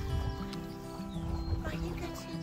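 Background music with sustained notes over a bass line that steps back and forth between two notes.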